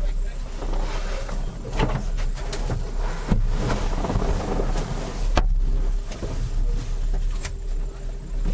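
Knocks, bumps and rustling as a driver climbs into and settles in the cockpit seat of a racing catamaran, over a steady low rumble, with one sharp knock near the middle.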